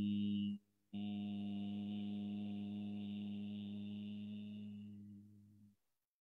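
A man humming a long, steady, low-pitched Om, broken by a brief pause about half a second in, then held again for nearly five seconds, fading gradually before it stops.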